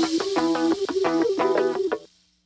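Slot machine's win count-up tune: short electronic notes repeating in a quick, even rhythm, about four or five a second, as the credits tally a win. It cuts off suddenly at the very end, as the count finishes.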